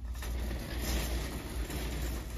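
Shopping cart rolling along a hard store floor: a steady low rumble with a rush of wheel and wire-basket rattle that swells about halfway through.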